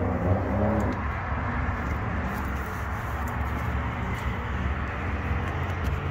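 A steady low rumble of a running motor vehicle, under an even outdoor background noise; a voice trails off in the first second.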